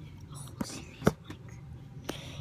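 Whispering, with a single sharp tap just after a second in.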